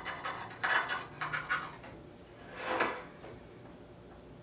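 A pen and a plastic speed square handled on a slotted aluminum extrusion table while marking the T-slots. Several short scratches and light knocks come first, then a longer scrape that swells and fades about three seconds in.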